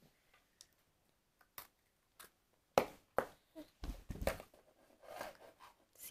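Faint scattered clicks and taps of toddlers handling and eating crumbly cookies at a hard tabletop, with a dull bump about four seconds in.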